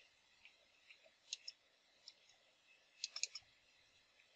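Faint computer keyboard key clicks, spaced out, with a quick run of several keystrokes about three seconds in.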